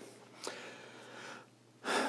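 A man drawing in a breath for about a second, picked up close by a clip-on lapel microphone, before speech resumes near the end.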